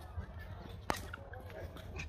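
A single sharp click about a second in, over a low steady rumble.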